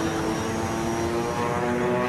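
Propeller aircraft engines running with a steady, even drone.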